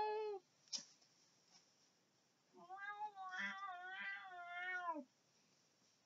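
A cat meowing: a short meow trailing off just after the start, then one long, wavering meow of about two and a half seconds.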